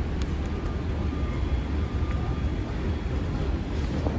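Steady low rumble of city street traffic and idling vehicles, with no voices.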